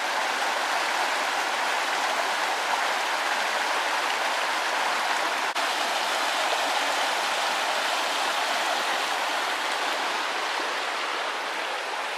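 Shallow, fast-flowing woodland stream rushing over rocks: a steady hiss of running water.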